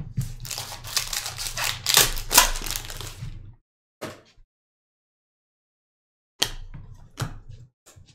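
A foil trading-card pack (2020 Chronicles Draft football) being torn open and crinkled for about three and a half seconds. After a pause, a shorter run of crisp rustles and flicks follows as the cards are slid through.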